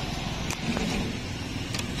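Steady low rumble of street traffic, with two brief light clicks, about half a second in and near the end.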